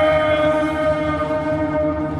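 Music: a male voice holds one long, steady note with many overtones over a low rumbling drone.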